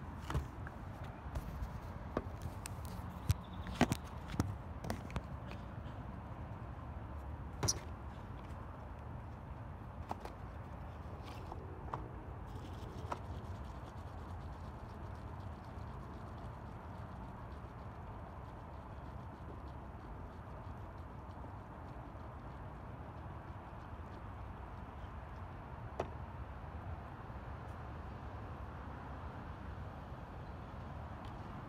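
Quiet, steady outdoor background rumble with a scattering of short sharp clicks and knocks in the first eight seconds and one more near the end.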